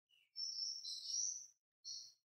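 High-pitched chirping, like a bird's call: a short falling note, then a warbling call lasting about a second, and a brief repeat near the end.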